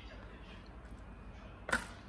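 Quiet room tone, then near the end one brief, sharp clatter of the water-filled plastic cup and its card against the plastic kit tray.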